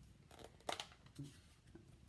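A few light clicks and taps as a plastic ink pad case and clear acrylic stamp blocks are moved and set down on a craft mat, the sharpest about a third of the way in.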